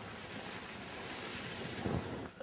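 A paint roller rolling paint onto a wall, a steady hiss.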